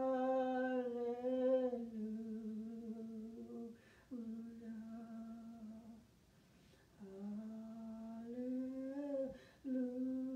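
A single voice singing a slow, unaccompanied worship song of the one word "hallelujah" in long held notes. It comes in four phrases with short breaks between them. The pitch steps down during the first phrase and climbs again near the end.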